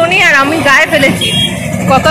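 A woman talking close to the microphone, with a steady low rumble underneath.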